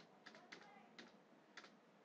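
A few faint clicks of a computer keyboard being typed on, spaced about half a second apart, under near silence.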